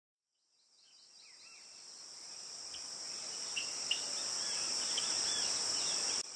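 Insects trilling steadily in a high-pitched chorus, with scattered short bird chirps. It fades in after about a second of silence.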